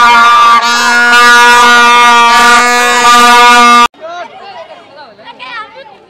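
Plastic toy trumpets blown by children, a loud steady held blare that cuts off abruptly about four seconds in; after it, children's voices and shouting.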